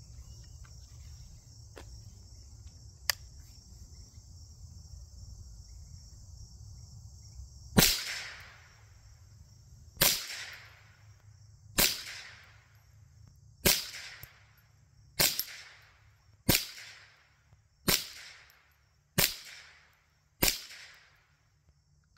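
Rossi RS22 semi-automatic .22 LR rifle firing nine shots, one every second and a half or so, starting about eight seconds in, each crack trailing off in a short echo. The rifle cycles through the magazine with no misfires or jams.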